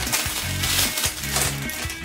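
Background music with a steady bass line, over the crinkling of a thin clear plastic accessory bag being torn open, loudest in the first second.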